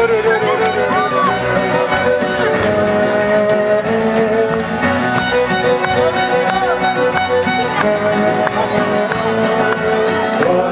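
Live acoustic band playing an instrumental passage: a violin carries the melody with held, sliding notes over strummed acoustic guitar and light percussion clicks.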